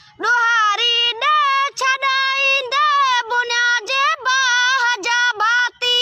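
A boy singing solo and unaccompanied in a high voice: a Sindhi devotional song, with long held notes that bend and waver in pitch, broken by short breaths.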